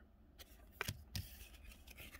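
Faint taps and rustles of baseball cards being handled and set down on a pile: a few short, quiet clicks of card stock.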